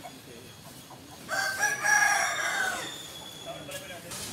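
A rooster crowing once, a single drawn-out call that starts about a second in, lasts about a second and a half and drops slightly in pitch as it ends.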